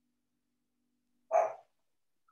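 A small dog barks once, a single short bark about a second and a half in.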